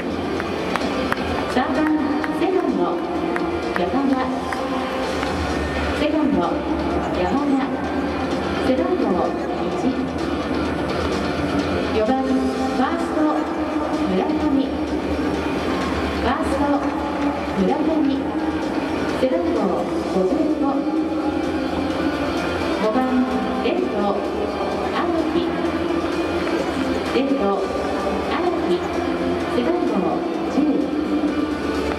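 Stadium public-address announcer reading out a baseball starting lineup over background music, the voice echoing through a large domed stadium.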